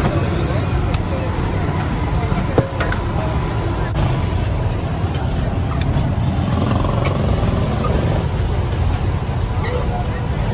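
Steady low rumble of street traffic with voices in the background, and a single sharp knock about two and a half seconds in.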